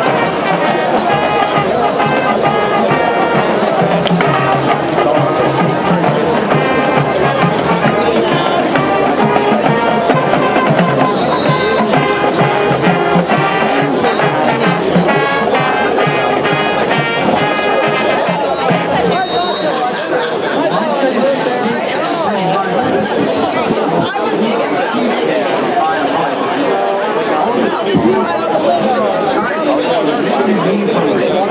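Marching band playing brass and drum music, with sousaphones, horns and drums. The music ends about two-thirds of the way in and gives way to many people chattering.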